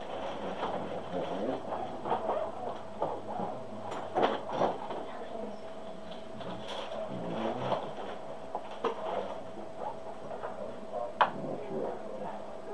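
DVD player's case being handled and pressed on a desk: scattered clicks, knocks and light rattles, the sharpest about four seconds in and near the end. A steady faint hum runs underneath.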